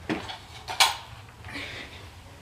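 Hard plastic and metal airsoft gear knocking as it is handled: a knock just after the start, a sharper, louder clack a little under a second in, then a short rustle.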